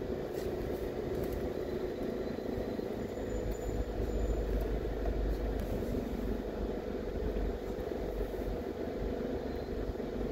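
Steady cabin noise from a car driving slowly: engine and road rumble with a steady hum. The low rumble grows stronger for a few seconds in the middle.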